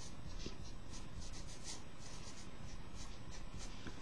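Felt-tip marker writing on paper in a series of short, scratchy strokes, over a steady low room hum.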